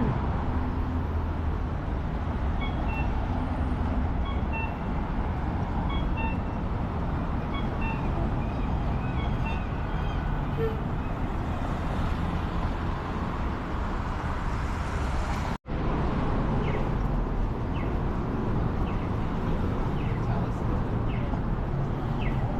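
City street ambience: steady traffic noise with distant voices, broken by a momentary dropout about two-thirds of the way through.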